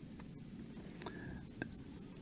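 A quiet pause in a man's talk: faint studio room tone with two soft clicks, one about halfway through and one a little later.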